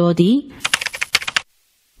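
A rapid run of sharp clicks like keyboard typing, about a dozen in a second, that cuts off suddenly.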